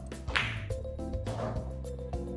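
A firm pool stroke: the cue tip hits the cue ball and the cue ball strikes the object ball, giving one sharp, loud crack about a third of a second in, with a fainter sound of the balls about a second later, over background music.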